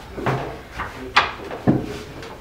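Wooden knocks and clacks as the wooden canopy rails of a folding field bed are fitted onto the tops of its bedposts, the two sharpest a little past the middle, about half a second apart.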